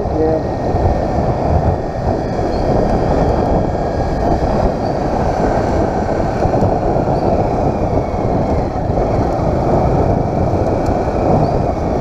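Small motorcycle engine running steadily while riding through town traffic, with heavy wind rumble on the bike-mounted microphone and faint pitch glides as the engine speed shifts.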